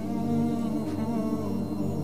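Background music of wordless humming voices holding long, steady notes.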